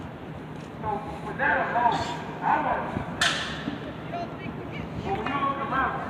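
A crowd of protesters shouting and calling out, several raised voices overlapping, with a single sharp crack about three seconds in.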